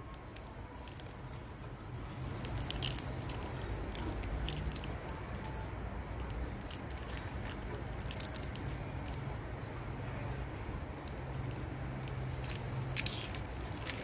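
Faint crinkling of tape and small plastic clicks as a lithium battery pack wrapped in yellow insulating tape is turned over in the hands and picked at, over a low steady hum.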